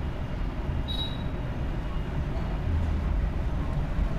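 A spatula stirring and scraping minced meat around an aluminium pot over a gas flame, with a steady low rumble from the burner. The meat's own liquid has almost cooked off.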